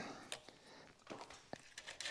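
Faint, scattered clicks and ticks of a chainsaw chain being handled and clamped in a Forester chainsaw filing vise. The vise's cam clamp is not holding the 50-gauge chain firmly.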